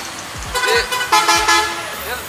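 A vehicle horn sounds one steady note for about half a second, a second in, over the hum of street traffic.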